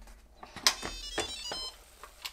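Instant Pot Lux Mini lid being twisted open and lifted off once the float valve has dropped: a few sharp clicks with a brief high-pitched squeak in the middle.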